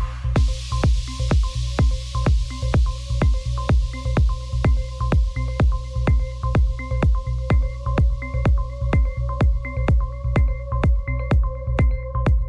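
Techno from a DJ set: a steady kick drum about two beats a second over a deep bass line, with short repeating synth blips. The hi-hats cut out right at the start, leaving a hiss that fades away over the next several seconds.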